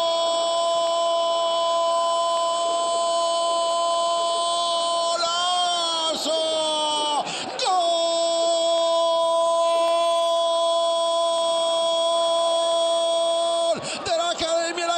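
A football commentator's drawn-out goal cry, a single vowel held on one steady note for about seven seconds. It wavers up and then falls away, and after a quick breath it is held again on the same note for about six more seconds.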